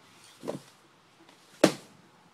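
Vinyl records in their sleeves slapping against each other as they are flipped through in a crate: a lighter slap about half a second in and a louder, sharper one near the end.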